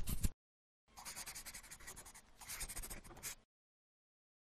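Sound effect of a pen scratching on paper: a run of quick scribbling strokes that stops just after the start, then a softer stretch of scratchy writing from about a second in that stops about half a second before the end.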